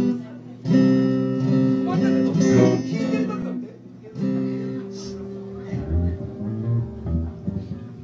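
Electric and acoustic guitars playing chords that ring out and stop several times. Deeper bass guitar notes come in during the second half as the playing gets quieter.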